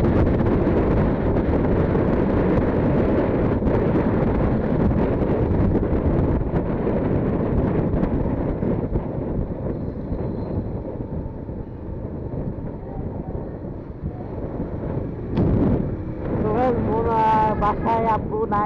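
Wind buffeting the microphone, mixed with engine and road noise, on a motorcycle being ridden along a street; the rush eases off in the second half as the bike slows. A man's voice begins near the end.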